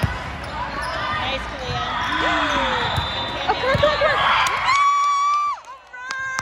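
Volleyball rally in a sports hall: the ball is struck sharply at the start, with a few more ball contacts and players calling out. Near the end comes one long high-pitched shout as the point is won.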